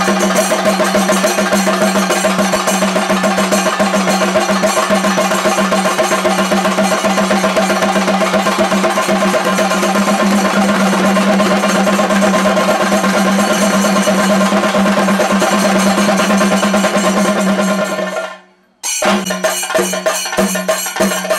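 Traditional temple music: fast, dense drumming over a steady low drone. It drops out abruptly for a moment near the end, then starts again.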